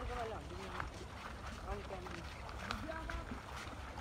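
Faint voices talking, over a low rumble of wind on the microphone.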